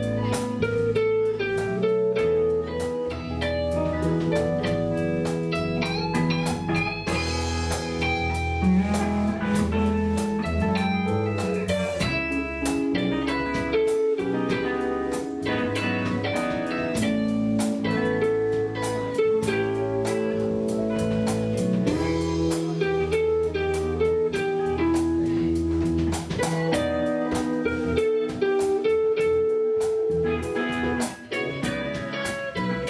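Live instrumental blues-rock jam: electric guitars over a steady drum-kit beat, with a flute playing at the end.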